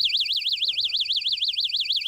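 Electronic bite alarm of a One Strike automatic ice-fishing rig sounding a loud, high warbling tone that sweeps rapidly up and down several times a second: the signal that a fish has taken the line.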